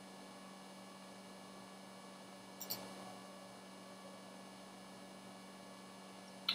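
Quiet steady mains hum, with a brief faint double click from a computer mouse about two and a half seconds in.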